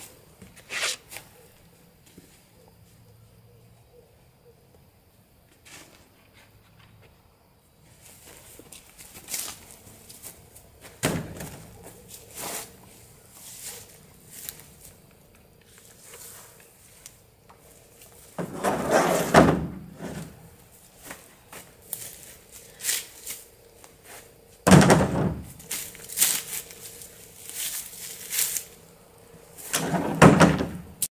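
Scrap wood boards and pieces tossed into a pickup truck bed, landing with irregular wooden thunks and clatters. Two heavy thuds come past the middle, then a quick run of knocks near the end.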